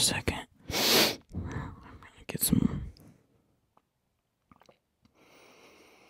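A young man's voice muttering and whispering under his breath, with breathy puffs, for about three seconds. Then near quiet, with a few small clicks and a faint hiss near the end as he sips water from a glass.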